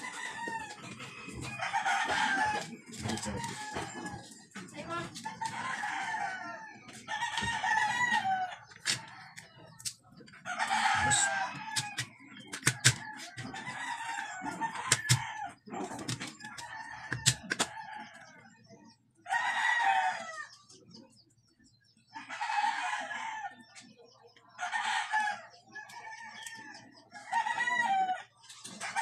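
Chickens calling again and again, roosters crowing and hens clucking, in separate calls about a second long. In the middle comes a run of sharp knocks from a cleaver chopping garlic on a cutting board.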